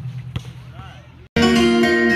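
A basketball bouncing once sharply on an outdoor court under faint distant voices; about a second in, the sound cuts off and loud music with plucked guitar takes over.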